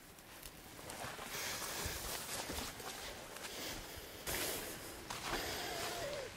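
Rustling of spruce branches and undergrowth, with footsteps on the forest floor, as a person pushes out from under the trees carrying a clump of freshly pulled moss. It starts faint and grows louder about a second in, in uneven bursts.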